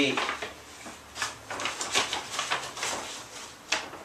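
Paper bags rustling and crinkling as they are handled and draped over the feet, with the cans of tuna inside knocking; a sharp click near the end.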